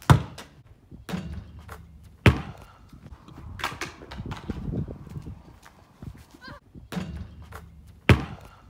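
A basketball bouncing hard on a concrete driveway: a string of sharp bounces, roughly one a second at first, each with a short low ringing after it, and smaller knocks in between.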